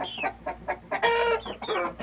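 Young Indian-breed chickens calling: a few short falling chirps and one longer, steady, higher-pitched call about a second in. They are nervous at being out in unfamiliar surroundings for the first time.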